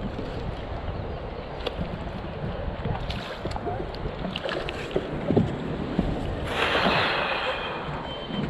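Wind on the microphone and light water noise while a hooked calico bass is held at the surface beside the boat. About six and a half seconds in there is a splash of about a second as the fish thrashes at the surface.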